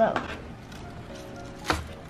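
Soft background music with steady held notes, and a single sharp knock near the end.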